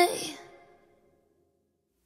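The end of a K-pop song: the last sung note by a female voice dies away in about half a second, then silence.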